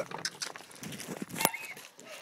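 A dog giving a few short barks. A sharp click about one and a half seconds in is the loudest sound.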